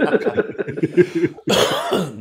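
Men laughing over a video call, in quick pulses, with a loud breathy burst like a cough near the end.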